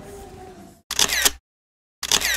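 Camera shutter click about a second in, between stretches of dead silence after faint hall sound dies away; an identical second click begins right at the end.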